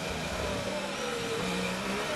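Onboard sound of a Ferrari Formula 1 car's 1.6-litre turbocharged V6 running through a corner, its pitch falling slowly.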